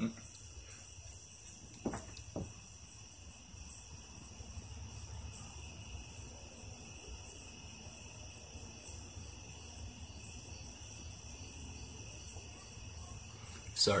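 Quiet room tone with a faint, steady high-pitched drone, and two short clicks about two seconds in.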